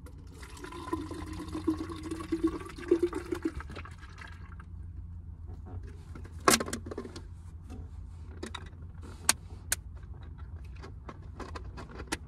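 Water being poured into a container for about four and a half seconds, followed by a few sharp clicks and knocks, the loudest about six and a half seconds in, over a low steady hum.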